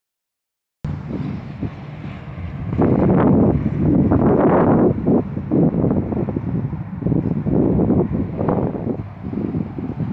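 Wind buffeting a phone's microphone in irregular gusts, a low rumble that starts about a second in and surges louder from about three seconds on.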